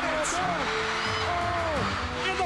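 Excited voices shouting in rising and falling cries, with music underneath.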